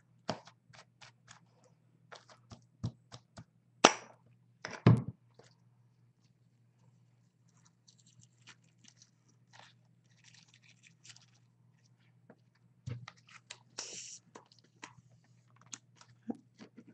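Craft handling sounds: ribbon and paper rustling, with scattered small clicks and taps as pieces are tucked into the edge of a canvas, and two louder knocks about four and five seconds in. A faint steady low hum sits underneath.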